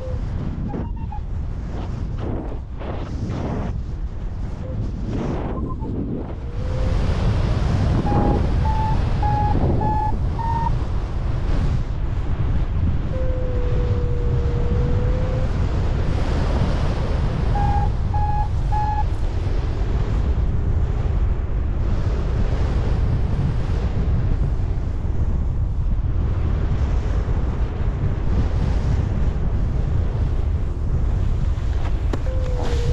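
Airflow rushing over the microphone of a paraglider in flight, getting louder about six seconds in. A variometer beeps over it: a short run of high beeps stepping up in pitch, then one longer, lower tone, then another short run of high beeps.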